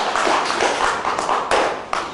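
Hands clapping in a hall, with two sharp knocks near the end.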